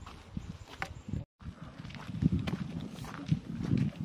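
Footsteps crunching on a gravel dirt road while walking, an irregular run of short thuds and scrapes. The sound cuts out completely for a moment just over a second in, and the steps come louder after it.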